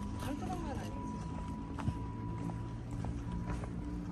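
Indistinct voices of people around, with scattered sharp clicks of footsteps on stone paving; a faint steady high tone runs underneath.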